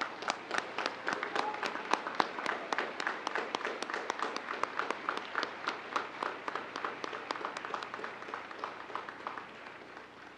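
Audience applauding with dense hand-clapping that thins out and dies away near the end.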